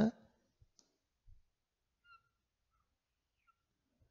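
Near silence with a few faint, brief squeaks and ticks of a marker writing on a whiteboard.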